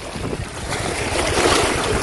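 Small sea waves washing against shore rocks, with wind buffeting the microphone; the wash swells to its loudest partway through.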